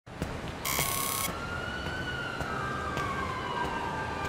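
A siren wailing in one slow sweep, its pitch rising a little and then falling away. A short burst of static hiss comes under it about three-quarters of a second in, with a few faint clicks.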